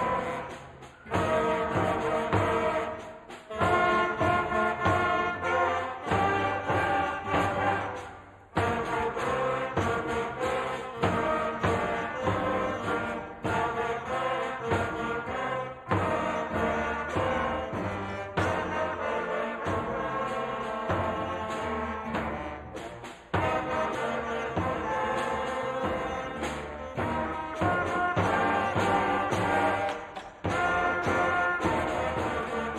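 A school concert band of young students playing a rock-style number on brass, woodwinds and drum kit. In the first several seconds the music stops briefly a few times between phrases, then comes back in sharply.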